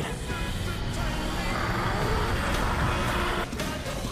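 Edited soundtrack of music mixed with a rumbling, vehicle-like noise that swells through the middle and drops out briefly near the end.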